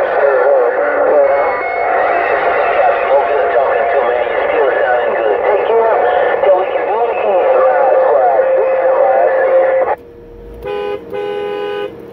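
Uniden Grant XL CB radio receiving a crowded channel: many stations transmitting at once, a jumble of overlapping voices and wavering whistles. About ten seconds in it drops away, and a short steady electronic tone sounds twice before the end.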